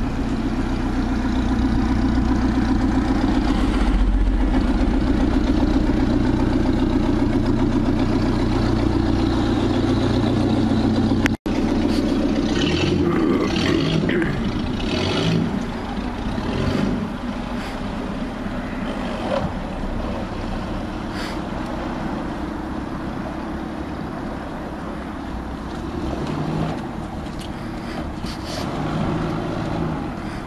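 Small cabin cruiser's engine running at a slow steady speed as the boat passes close by, a low drone. About eleven seconds in, the sound cuts out for an instant and then turns quieter and rougher, with scattered knocks.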